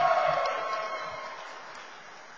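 A held, pitched shout from the audience, cheering for the graduate, ends just after the start. It echoes through the large hall and dies away over the next second and a half, with faint crowd noise under it.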